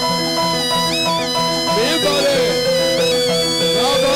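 Traditional Burmese fight music: a lead melody with sliding, bending notes over a fast repeating pattern of short pitched notes, playing steadily throughout.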